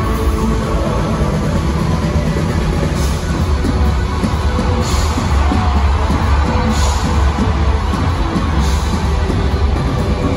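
Loud live rock music from a band in an arena, heavy in the bass, with short bursts of hiss every couple of seconds.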